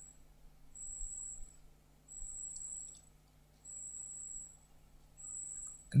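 A pause in the talk: a faint high-pitched trill comes in short bursts about every second and a half, over a low steady hum.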